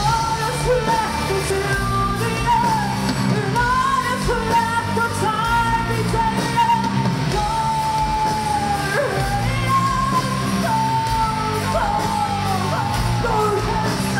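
Live metal band playing, heard from the crowd in a large hall: a female vocalist sings long held high notes over guitars, bass and drums.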